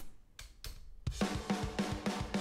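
Metal drums from a programmed drum kit played back through a soloed parallel-compression bus, an 1176-style compressor crushing it with about 12 dB of gain reduction, which is a lot. The drums come in about a second in: rapid hits about eight a second, snare-heavy with light kick, their sustain and room filled out by the compression.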